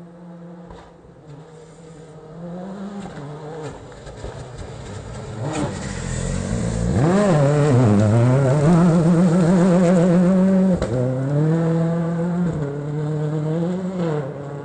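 Rally car engine revving hard as it comes into a gravel hairpin, growing louder and rising in pitch, then swooping down and up as the car slides through the corner. It holds a steady high note, cuts off sharply for a gear change a little before the end, then climbs again as it pulls away.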